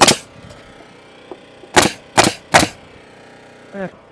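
Pneumatic nail gun driving nails into wood: one shot at the start, then three quick shots, under half a second apart, a little under two seconds in. The nails fasten a diagonal wall brace down to the OSB subfloor.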